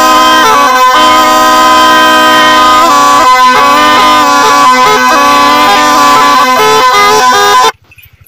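Snake charmer's been (pungi), a gourd reed pipe, playing a nasal, reedy melody over a steady drone. It cuts off abruptly just before the end.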